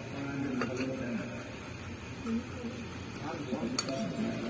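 Faint talking voices in the background, with a light click near the end.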